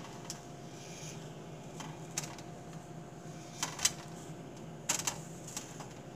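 A handful of light, scattered taps as pieces of pre-portioned cookie dough are set down on a metal baking sheet, over a steady low hum.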